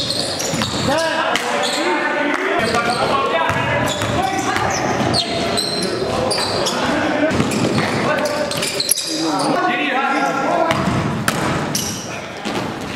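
Basketball game audio in a gym: the ball bouncing on the court, with players' voices and shouts throughout and the echo of a large hall.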